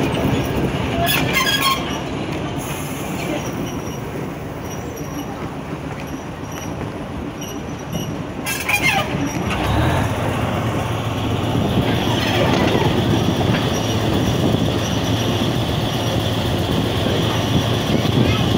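A heritage train running along the track, heard from a carriage: a steady rumble of wheels on rail with short high-pitched wheel squeals near the start and again about nine seconds in. From about ten seconds in, a louder, steady low engine drone from the locomotive joins the rumble.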